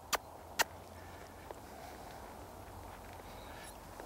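Faint sound of a young horse walking under a rider on soft arena sand, with two sharp clicks about half a second apart near the start.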